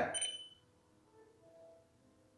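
A short, high electronic tone from a phone app's button-press sound. It rings out and fades within about half a second, and faint room tone follows.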